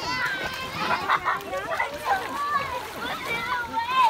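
Young children's voices calling and chattering over the splashing of feet wading through shallow river water.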